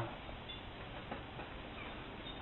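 A pause in a man's talk: only faint, steady background hiss of the recording (room tone), with no distinct sound.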